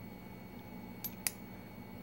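DX Mantis C81 folding knife's cross-bolt lock being pushed to unlock the blade, giving two faint ticks close together about a second in, the second louder. This little tick is the lock releasing with the slightest hint of lock stick, which the owner rates as not bad at all.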